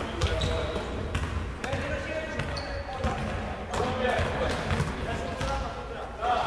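Volleyball being struck by players' hands and forearms in a passing drill, sharp hits about once a second, with indistinct voices in the background.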